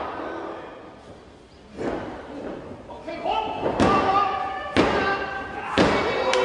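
Thuds on a wrestling ring's canvas: four impacts, the last three about a second apart, each with shouting voices ringing out over it.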